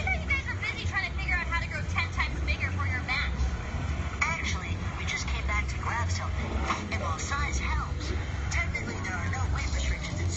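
Indistinct voices talking throughout, over a steady low rumble.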